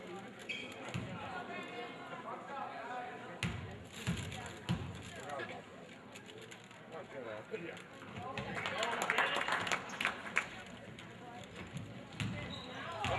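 A basketball bounced a few times on a hardwood gym floor amid spectators' chatter, then a burst of crowd cheering and clapping a little past the middle, as the free throw is taken.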